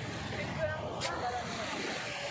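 Indistinct distant voices over a steady wash of surf and wind, with a single sharp click about a second in.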